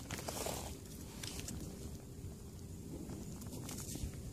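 Faint rustling and crumbling of a gloved hand working through loose soil, with a few small clicks right at the start, over a low steady rumble.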